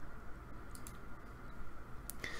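Faint background hum and hiss with a few soft clicks a little under a second in.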